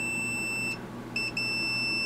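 Klein digital multimeter's continuity beeper sounding a steady high-pitched tone as its probes touch the metallic coating inside a plastic radio case, showing that the coating is conductive. The tone cuts out shortly before the middle, then comes back about half a second later with a short chirp and sounds steadily again.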